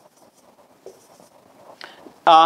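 Faint strokes of a marker pen writing a word on a whiteboard.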